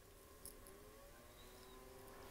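Near silence: a faint click as the power plug goes into the Tacx Neo 2 SE smart trainer, then a faint whine from the trainer powering up, rising in pitch and then holding steady.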